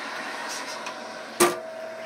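Emeril countertop oven running with a steady hum while it preheats; about one and a half seconds in, a single sharp click as its door is shut.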